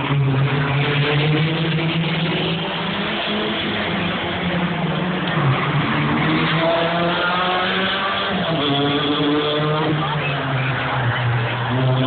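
Race car engines running at speed on a street circuit, with the engine note climbing through the revs, dropping sharply about eight and a half seconds in, and climbing again.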